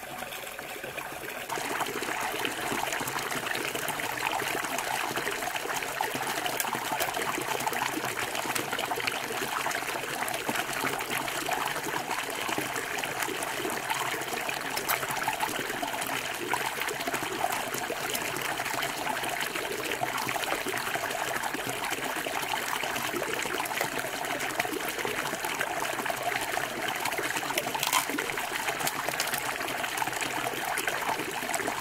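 Shallow river water trickling and flowing steadily, getting louder about a second and a half in, with a single sharp click near the end.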